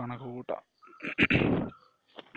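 A man's voice narrating in Malayalam, with a short, loud, rough-sounding vocal burst a little over a second in.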